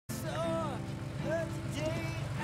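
A car engine running steadily, with voices talking over it.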